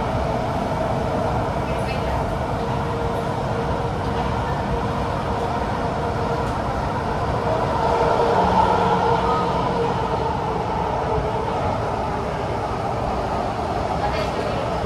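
Inside a Kawasaki–CRRC CT251 metro car on the move in a tunnel: steady rumble of wheels on rail under a traction-motor whine. The whine swells and grows louder about eight seconds in.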